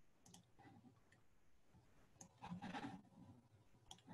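Near silence with a few faint, scattered computer mouse clicks as slides are advanced, and a brief soft rustle a little past the middle.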